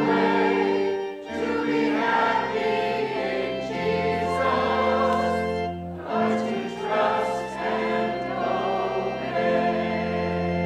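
Congregation singing a slow hymn together, with long held notes over organ accompaniment.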